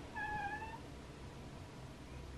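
A door opening, its hinge giving one faint, short creak that wavers slightly in pitch, under a second long.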